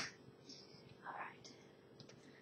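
Quiet room with a faint steady hum. A sharp tap fades right at the start, and a brief soft whisper comes about a second in.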